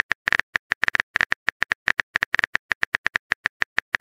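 Simulated phone keyboard typing sound effect: rapid, uneven clicks, about eight a second, as a text message is typed out.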